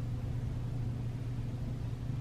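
Steady low hum with a faint even hiss: room background, with no distinct sound events.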